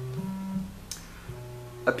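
Modular synthesizer notes jumping in steps to new random pitches, driven by a sample and hold module clocked by a pulse wave; the pitch changes twice, with a short click near the middle.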